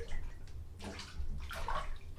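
Bath water splashing as a person steps into a filled bathtub, in three short splashes about a second apart.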